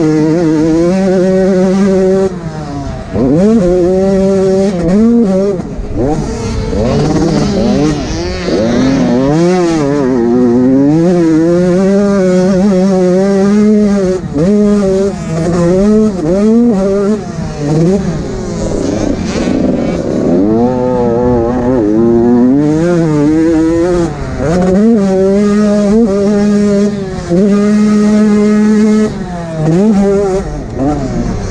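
An 85cc two-stroke motocross bike's engine, heard from the rider's helmet, revving hard and rising in pitch through the gears, then dropping off the throttle and picking up again every second or two around the track.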